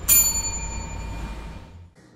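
A bell-like ding sound effect that strikes once and rings out, fading over about a second, over a low rumble that stops just before the end.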